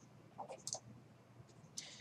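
A few faint clicks at a computer: a short cluster about half a second in and another near the end.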